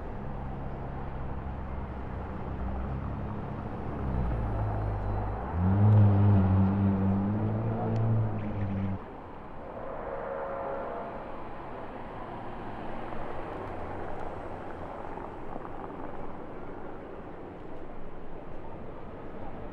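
Car engines in slow street traffic: a steady low engine note, then a louder pitched engine note from about five to nine seconds in that cuts off suddenly, followed by quieter traffic noise.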